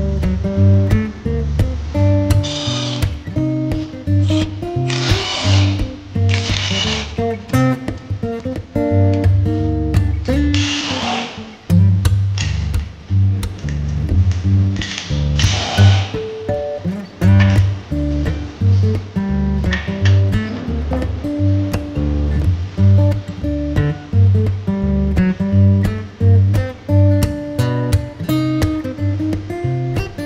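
Background music with guitar over a steady, pulsing bass beat, with a few short bursts of hiss.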